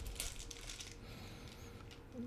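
Faint crinkling and rustling of a small clear plastic parts bag being handled and opened.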